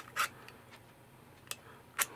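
A few faint, sharp clicks as needle-nose pliers work the metal battery contact tabs inside a Swiffer WetJet's plastic handle, bending them back out so they press on the batteries again.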